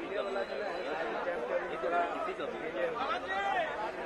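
Indistinct chatter of several men talking at once, with overlapping voices and no single clear speaker.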